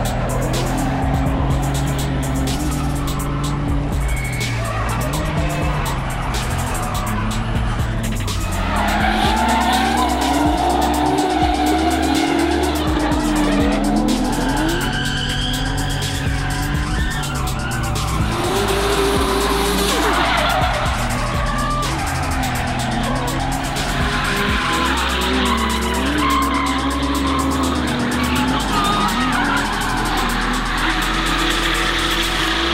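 BMW E46 325i's straight-six engine revving up and down through long drifts, with tyres squealing and skidding, mixed with background music that has a stepped bass line.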